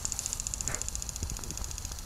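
Lawn sprinkler spraying water: a steady high hiss that pulses quickly and evenly.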